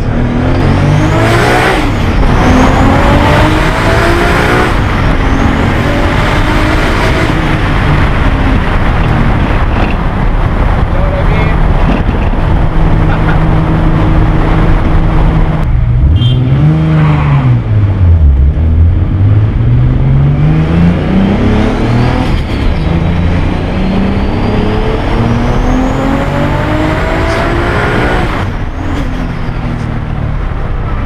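Single-turbo 1997 Toyota Supra's built 3.0-litre inline-six heard from inside the cabin, pulling hard: the revs climb again and again, each climb broken off by a gear change. About halfway through the engine holds steady, then the revs drop and climb again.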